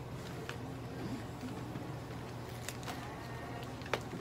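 Steady low room hum with a few faint clicks and one sharper click near the end, from a plastic feeding syringe knocking against a toy poodle's plastic cone collar as the dog is syringe-fed.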